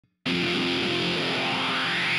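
Rock music with distorted electric guitar, starting abruptly about a quarter second in and then running steadily.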